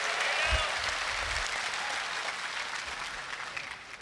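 Large audience applauding, the clapping slowly dying away near the end.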